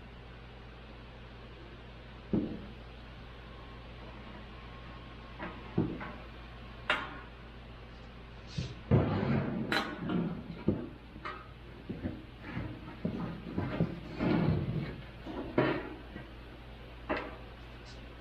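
Thin galvanized sheet steel being handled and pressed into shape on a wooden workbench: irregular knocks and short metallic clatters, sparse at first and coming thick about halfway through, over a steady low hum.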